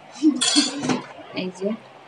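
Dishes and utensils clinking and clattering, a few short knocks in the first second and a half.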